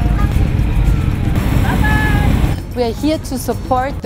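Engine of a classic Jaguar E-Type roadster, a straight-six, running with a deep rumble as it drives slowly past close by, with music faintly underneath. About two and a half seconds in, the rumble fades and a voice takes over.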